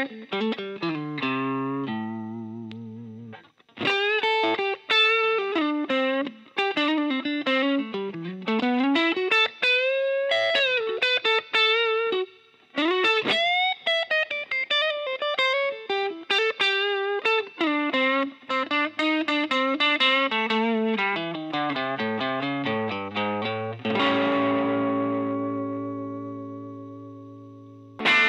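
Custom Telecaster electric guitar with a Hepcat pickup, played solo: single-note lead lines with string bends and vibrato and a briefly held chord early on. Near the end a chord is struck and left to ring.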